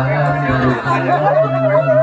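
A man's voice over a microphone and loudspeaker, holding long, level chanted notes with short breaks, over crowd chatter.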